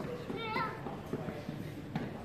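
Indistinct voices of people in the street, with a brief high-pitched voice about half a second in and a short click near the end.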